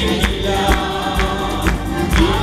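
Live gospel worship music: several voices singing together over keyboard and acoustic guitar, with a steady percussive beat of about two strikes a second.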